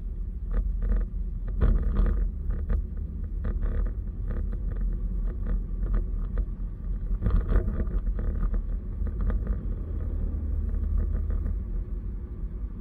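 Car driving along a road, heard from inside the cabin: a steady low rumble of tyres and engine, with frequent short, irregular clicks and knocks.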